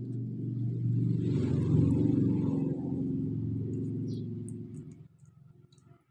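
A low rumble that builds over the first two seconds and fades away about five seconds in.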